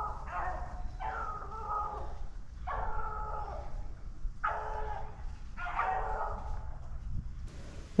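Beagles baying on a rabbit chase: about six long, drawn-out calls, each lasting around a second, with short gaps between them.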